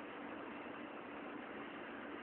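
Steady low hiss with a faint steady hum: room tone through a phone microphone.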